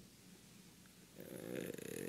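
Near silence for about a second, then a man's audible, slightly raspy intake of breath at the podium microphone, growing louder toward the end.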